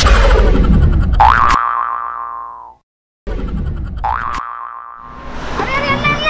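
Comic logo sting of sound effects: a loud hit, then a springy, rising boing that rings down and cuts off. After a brief silence a second hit and boing follow, and a voice begins near the end.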